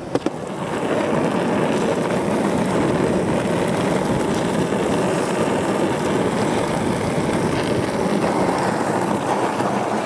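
Soft 78A Road Rider urethane skateboard wheels rolling steadily over asphalt, a continuous even rumble that builds up in the first second.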